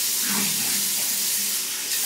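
Water running steadily from a sink tap, an even hiss.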